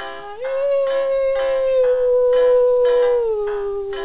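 A dog howling along to music: one long howl that steps up in pitch about half a second in, holds for nearly three seconds, then slides back down. Plucked-string accompaniment keeps a steady beat underneath.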